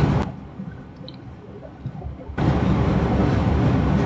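Steady background hiss and low hum of a room, with no speech. It drops away abruptly for about two seconds, with a couple of faint ticks, then comes back.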